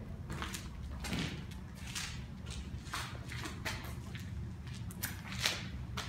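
Footsteps on a concrete walkway scattered with dry leaves, about two steps a second, over a steady low rumble.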